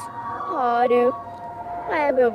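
A girl's voice speaking in two phrases, with strongly rising and falling pitch.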